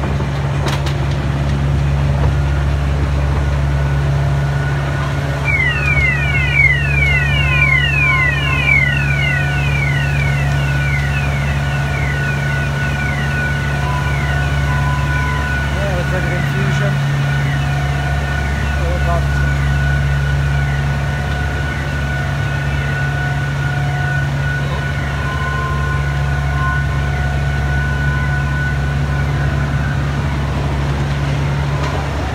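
Diesel engine of a one-third scale Flying Scotsman replica miniature locomotive running steadily, heard from the carriage behind. From about five seconds in, a quick series of high falling chirps repeats for about ten seconds and fades out.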